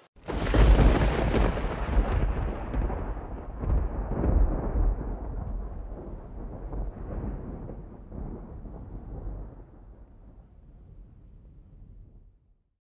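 A sudden deep boom that rolls on as a long rumble with several swells, slowly fading away over about twelve seconds, like a thunderclap.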